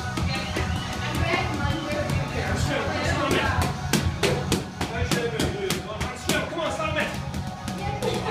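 Boxing gloves smacking focus mitts in quick, irregular strikes, over background music with a voice in it.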